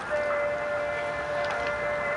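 Background music, probably from the course's loudspeakers, with one note held steady for nearly two seconds.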